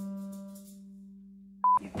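A single held musical note, steady and slowly fading, cut off near the end just after a short high beep.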